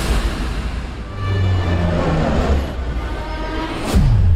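Dramatic film-trailer score with deep held low notes over rumbling crash sound effects, ending in one sharp, loud hit near the end.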